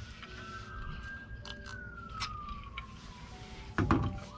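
A siren wailing, its single tone rising slowly and then falling over a few seconds, with a loud thump just before the end.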